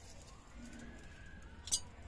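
A dove cooing faintly over a low background hum, with one sharp click near the end.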